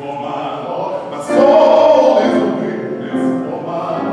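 A man singing a classical-style song with grand piano accompaniment, in a reverberant hall. About a second in he moves into a louder held note.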